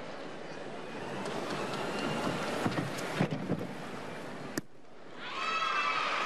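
Arena crowd hubbub during a gymnastics vault, with a few thuds from the run-up, springboard and vaulting table. A single sharp impact comes at the landing, about four and a half seconds in, and crowd cheering swells near the end.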